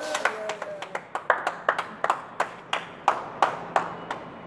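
Hands clapping in a steady rhythm, about three to four claps a second.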